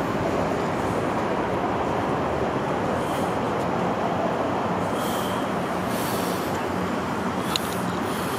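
Steady roar of city and freeway traffic, an even wash of road noise with no single vehicle standing out.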